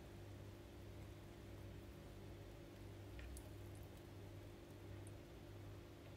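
Near silence: room tone with a faint steady low hum and one tiny tick about three seconds in.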